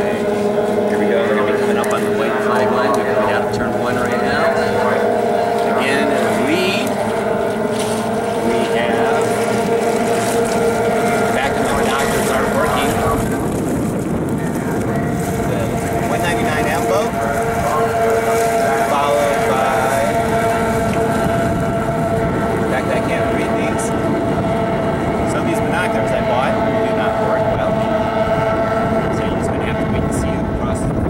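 A pack of AX-class stock outboard racing runabouts running flat out, their small two-stroke outboards keeping up a steady high drone. Pitches bend up and down as the boats pass and round the turns.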